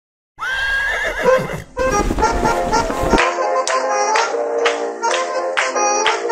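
Intro sound effects under music: a rising, wavering cry about half a second in, then about a second and a half of rumbling noise, then instrumental music with sharply plucked notes from about three seconds in.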